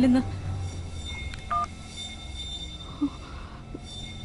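A single short mobile-phone keypad tone, two pitches sounding together, about one and a half seconds in, over a steady low hum.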